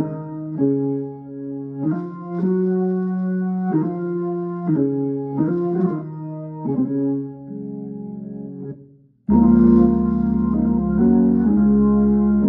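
Hammond organ playing slow hymn chords, each chord held and then moving to the next. About nine seconds in the sound stops for a moment, then comes back fuller, with a deep bass line underneath.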